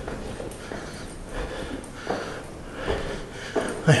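A man breathing hard and his footsteps on stairs as he climbs a long staircase, winded from the climb.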